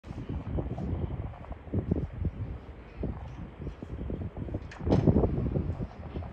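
Wind buffeting the microphone in irregular low gusts, strongest about five seconds in.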